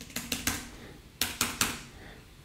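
Laptop keyboard keys, most likely the space bar, tapped in quick clicks: a group of about four near the start and about three more a little over a second in. Each press fires off a burst of particles in the program.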